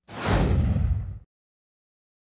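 A whoosh sound effect: one rushing swish, brightest at its start, lasting a little over a second and cutting off suddenly.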